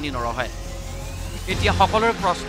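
A person speaking in short phrases with a pause in the middle, over a steady low background hum.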